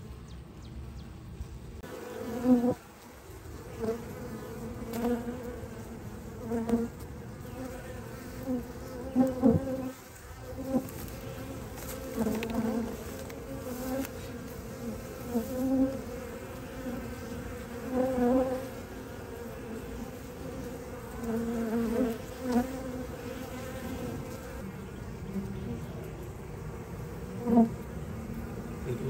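Honey bees buzzing around a swarm that is entering a hive: a steady hum, with louder swells every second or two as single bees fly close past.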